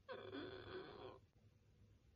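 A woman's short wordless groan of exasperation, wavering in pitch and lasting about a second.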